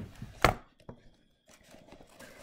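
Handling noise from a camera being picked up and turned around: a few sharp knocks, the loudest about half a second in, with faint rubbing between them.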